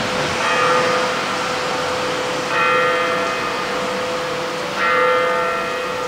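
A church bell tolling three strokes about two seconds apart, each ringing on until the next.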